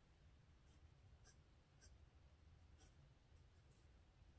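Faint scratching of a pencil writing on notebook paper: a few short strokes, spaced about half a second to a second apart, over a low room hum.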